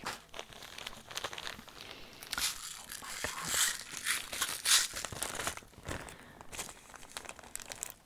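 Clear plastic bag of bead packets crinkling and rustling as it is handled, loudest through the middle seconds, with scattered small clicks.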